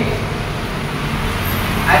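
Low rumble of road traffic, swelling about a second in as a vehicle passes. A man's voice starts near the end.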